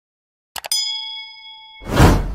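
Sound effects for a subscribe-button animation: two quick mouse clicks, then a bright bell ding that rings for about a second. Near the end a loud whoosh sets in.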